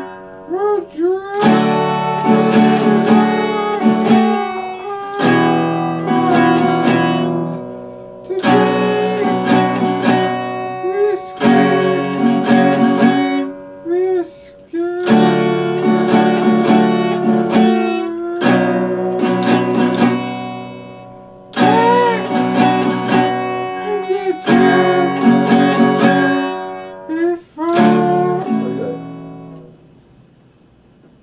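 Acoustic guitar playing chords in phrases of a few seconds each, with short breaks between them; the last chord rings out and fades just before the end.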